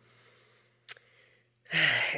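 A woman's pause between phrases: a faint breathy exhale, a single short click about a second in, then her voice starting again near the end.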